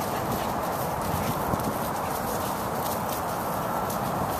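Dogs' paws and a person's footsteps moving over wood-chip mulch, with faint scattered rustles and ticks over a steady background hiss.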